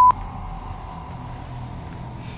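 A steady one-tone censor bleep that cuts off suddenly just after the start, followed by quiet studio room tone.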